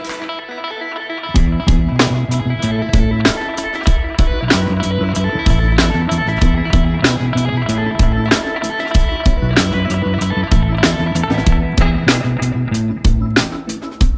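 Live band playing the opening of a song. Electric guitar plays alone at first. About a second in, bass guitar and drums come in with a steady beat.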